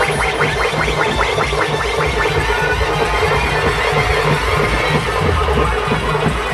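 Loud, distorted band music blaring from a large street sound system, with a fast run of repeated notes, about seven a second, in the first two seconds over a steady bass beat.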